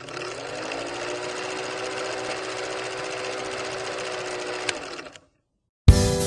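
Film projector sound effect: a steady, rapid mechanical clatter with a faint hum under it, cutting off suddenly about five seconds in. After a short silence, music with drums starts right at the end.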